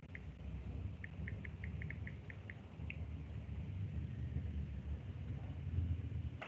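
Steady low rumble of background noise from an open call microphone, with a quick run of about ten short, high chirps between one and three seconds in.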